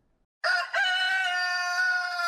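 A rooster crowing: one long cock-a-doodle-doo that starts about half a second in.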